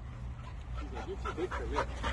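Two dogs at rough play, giving a few faint short whines about a second in, over a low steady rumble.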